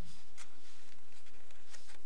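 Faint rustling of sewing thread being drawn through a fabric label and a fluffy microfiber-yarn knitted coaster, with a couple of soft ticks.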